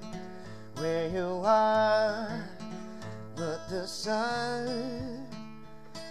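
A man singing a slow ballad to his own acoustic guitar accompaniment, in two held phrases with the guitar ringing between them.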